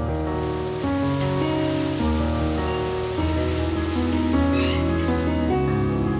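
Background piano music with the hiss of falling rain laid over it. The rain comes in just after the start and fades out near the end.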